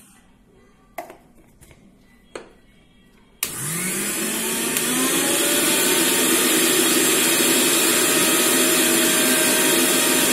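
A Philips mixer grinder's motor switches on about a third of the way in, its whine rising as it spins up, then runs steadily, blending semolina batter in the steel jar. A couple of light knocks come before it starts.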